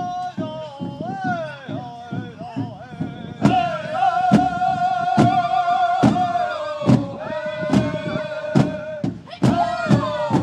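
Native American drum group: a big drum beaten steadily under chanted singing in high, wavering voices with long held notes and falling glides. About three and a half seconds in the song gets louder, with hard drum strikes about once a second.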